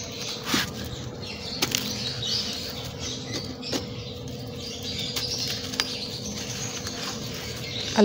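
A dried, chalky homemade texture block crumbled by hand onto a concrete floor. It makes a dry crunching and crackling with several sharp snaps as pieces break off, and grit pattering down.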